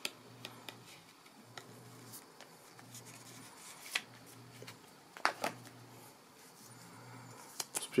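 Paper and cardboard packaging being handled: scattered soft taps and rustles, with sharper clicks about four and five seconds in.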